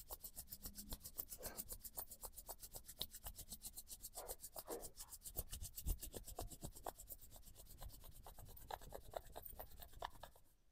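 Palms rubbed briskly together to warm them, a quick, even rhythm of skin-on-skin strokes that runs on steadily and stops just at the end.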